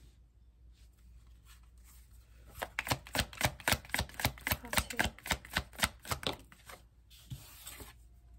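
Deck of tarot cards being shuffled by hand: a quick run of card flicks, about five a second, lasting some four seconds, followed by a brief brushing slide of cards.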